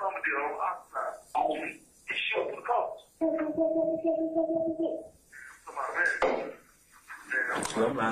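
Indistinct male speech from a recorded jail phone call playing back, with a steady held tone lasting a little under two seconds midway.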